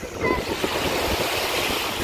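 Small waves washing up on a sandy shore, a steady hiss that swells about half a second in, with wind rumbling on the microphone.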